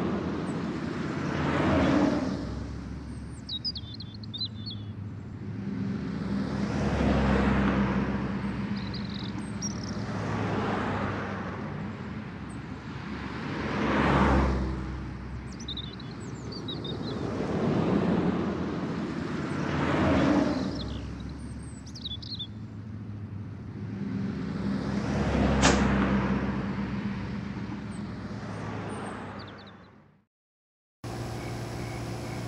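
Outdoor street traffic: cars passing one after another, each swelling and fading over a few seconds, with birds chirping now and then. The sound fades out at the very end.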